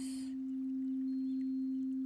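Crystal singing bowl played with a mallet, sounding one steady, pure low tone that holds at an even level throughout.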